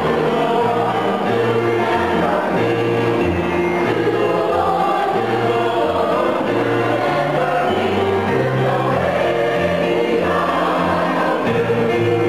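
Mixed choir of men's and women's voices singing a sacred song in harmony, with long held notes over a moving low bass part.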